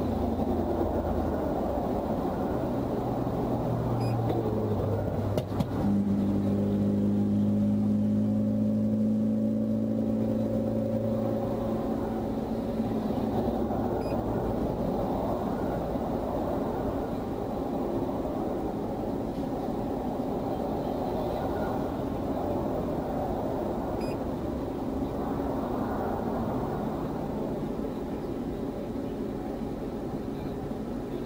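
Steady roadside traffic rumble. A passing vehicle's engine drone rises from about three seconds in and fades away by about twelve seconds.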